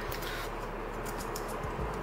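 Small numbered tags being shaken inside a glass jar: faint, scattered light clicks and rattles.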